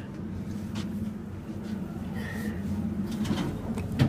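Dover hydraulic elevator cab running with a steady low hum, with a few faint clicks and rattles.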